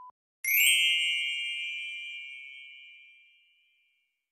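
A single bright bell ding, struck about half a second in and ringing out with several high tones as it fades over about three seconds. It follows the tail end of a steady censor bleep.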